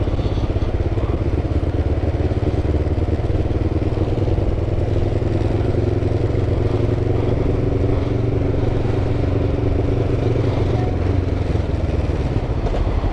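Kawasaki ER-5 parallel-twin motorcycle engine running at low, steady revs as the bike creeps along in slow traffic, with no big revving.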